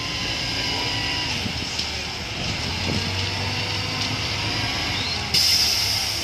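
Terex crane's diesel engine running steadily under load as it hoists a lattice catenary mast, with a low hum. About five seconds in, a louder hissing noise cuts in suddenly and holds.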